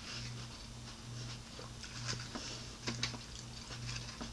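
Quiet chewing and mouth sounds of a person eating an omelet, with a few soft smacks and clicks, over a faint low hum that pulses about twice a second.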